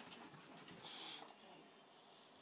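Faint sounds of an English bulldog moving about and settling on a carpet, with a short hiss about a second in.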